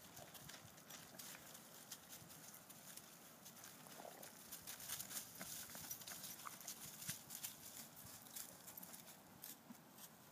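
Faint, irregular clicking and crunching of footsteps on loose stones and gravel, with rocks knocking together underfoot several times a second.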